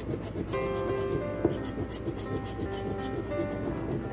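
A metal coin scraping the coating off a scratch-off lottery ticket in rapid, repeated strokes, over soft background music with held notes.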